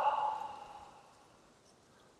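A man's long, audible sighing exhale through the mouth, a deliberate relaxing breath, fading away about a second in.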